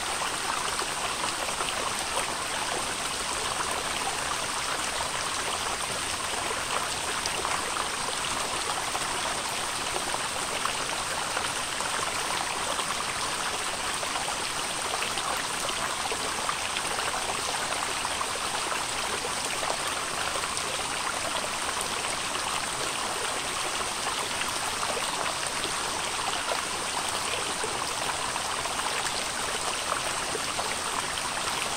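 Shallow stream flowing over small rocks, a steady, unbroken rush and splash of running water.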